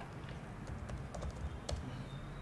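Faint, irregular clicking of keys being typed on a computer keyboard.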